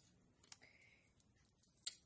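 Near silence: room tone with two faint short clicks, about half a second in and just before the end.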